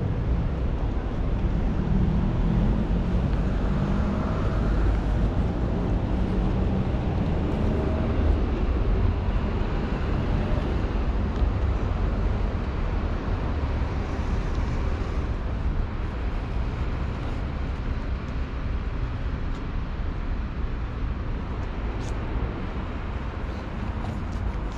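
Steady rumble of city road traffic. An engine note stands out over it for the first few seconds, then fades.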